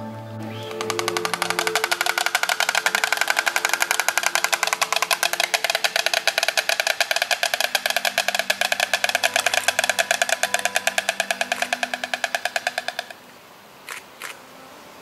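White stork clattering its bill on the nest: a loud, rapid, even rattle that starts about a second in, runs for about twelve seconds and stops suddenly, with two short clacks just before the end. This is the bill-clattering display storks use to greet a mate. Soft background music runs underneath.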